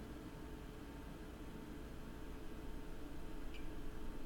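Quiet room tone with a faint steady hum, a few soft ticks and a very brief faint beep about three and a half seconds in.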